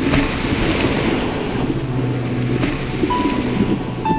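Ocean surf washing onto a rocky shore, a steady rush of waves, over soft sustained background music.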